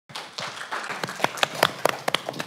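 Audience applauding, the clapping thinning out to a few separate claps near the end.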